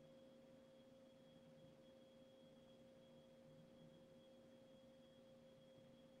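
Near silence, with a faint steady hum made of a few held tones.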